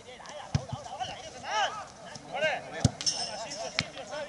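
Footballers calling and shouting across the pitch in drawn-out calls, with a few sharp thuds of the ball being kicked, the clearest nearly three seconds in.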